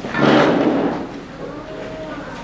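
A roomful of people getting up from their seats: chairs shifting and scraping with shuffling, loudest in the first second and then fading.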